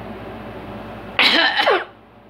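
A person coughs loudly in two short, breathy bursts, falling in pitch, right after gulping water from a bottle.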